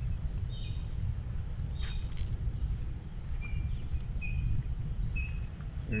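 Songbirds chirping over the steady low rumble of a slowly moving vehicle. In the second half one bird repeats a short high note about once a second.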